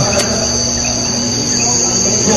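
A steady, high-pitched insect chorus, like crickets chirring, with a steady low hum underneath.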